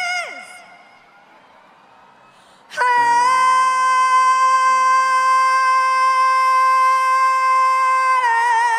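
A female pop singer's voice, live: a held note ends with a falling slide, then after a quieter pause of about two seconds she comes in loudly on one long held note, dead steady for about five seconds, with vibrato starting near the end.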